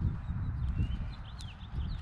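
Uneven low rumbling on the microphone outdoors, with a few faint, short bird chirps about a second in.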